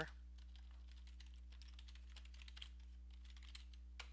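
Faint typing on a computer keyboard: a quick, uneven run of keystrokes entering a terminal command, over a low steady electrical hum.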